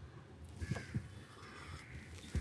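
Faint street background with a bird calling twice, in the manner of a crow's caw, and a couple of soft knocks in between.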